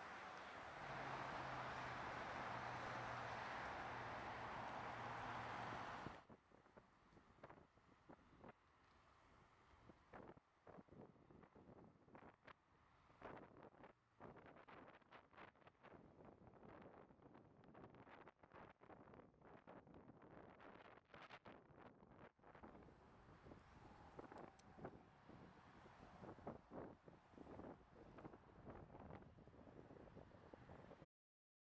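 Steady noise of freeway traffic passing below, cutting off abruptly about six seconds in. After that, faint, irregular wind buffeting on the microphone from riding a bicycle.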